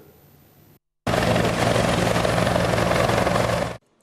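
Helicopter flying over the sea, its rotor throbbing steadily under a loud rushing noise. It starts abruptly about a second in and cuts off just before the end.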